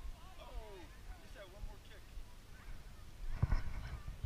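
Distant shouts and calls from across the playing field, rising and falling in pitch, over a low wind rumble on the microphone, with one louder, closer shout about three and a half seconds in.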